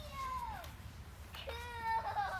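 A young child's high-pitched wordless squeals: a short falling squeal at the start, then a longer, steadier held note that begins partway through.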